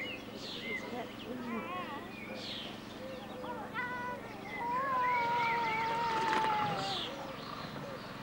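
A baby vocalising in high squeals and coos, with a wavering note early on and one long, slowly falling squeal in the middle.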